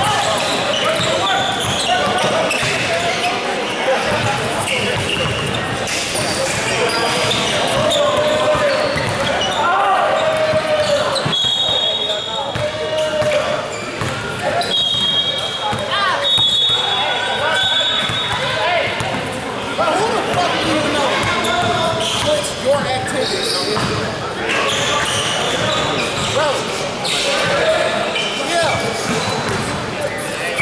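Basketballs bouncing on a hardwood gym floor during a game, with players and spectators talking and calling out, echoing through a large gym. A few short high squeaks come near the middle.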